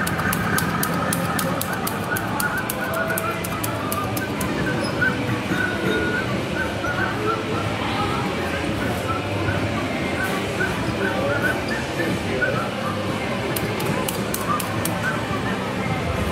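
Arcade ambience: music and electronic jingles from the game machines, with indistinct voices in the background. Runs of quick light clicks come near the start and again near the end.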